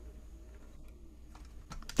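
Faint clicking of computer keyboard keys, with a quick run of keystrokes near the end.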